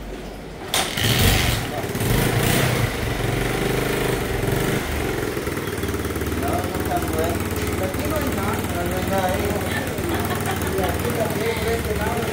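A small single-cylinder four-stroke Bajaj Platina motorcycle engine starts about a second in, is revved briefly, then settles into a steady idle.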